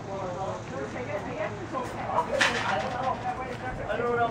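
Indistinct background talk from several people, with a short hiss about halfway through.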